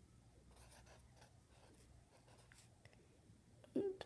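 Faint, intermittent scratching of a drawing tool on paper, with a brief vocal sound near the end.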